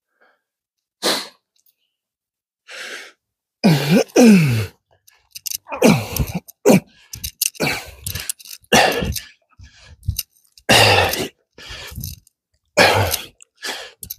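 A man's sharp, forceful breaths and short voiced grunts, one burst about every second: the effort of decline push-ups. Near the start there are a few isolated bursts, and a louder cough-like one about four seconds in.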